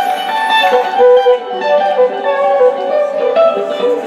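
Live band music: acoustic guitar playing with a violin carrying held melody notes, without drums.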